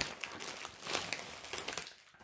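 Packaging of a cross-stitch kit crinkling as it is handled, a run of small irregular crackles.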